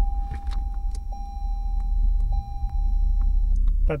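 Steady low rumble inside a car's cabin, with a thin steady high tone that cuts off near the end and a few light clicks as the chain of the pendant hanging from the mirror is handled.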